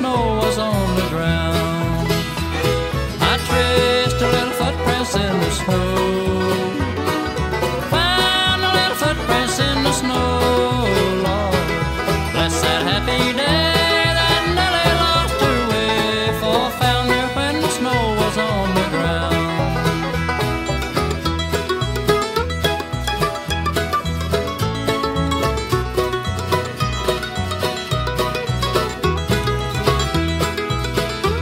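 Bluegrass band playing an instrumental break between sung verses: banjo and guitar over a steady bass line, with a lead melody whose notes slide, most clearly about a third and halfway through.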